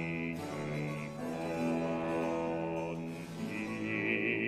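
Baroque opera continuo: harpsichord chords over held bass notes, the harmony changing a few times.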